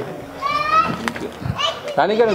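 Children's high-pitched voices calling out in the background, one drawn-out call about half a second in and a shorter call near the end, over low chatter.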